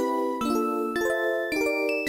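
Background music: a melody of chime-like notes, with a new note about every half second.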